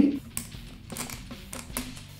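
A handful of light, irregular plastic clicks and ticks as a nylon zip tie is pushed through a hole in a 3D-printed plastic frame.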